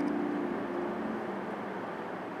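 Steady aircraft cabin noise, an even rushing drone that slowly grows quieter, with the last held notes of music dying away in the first second.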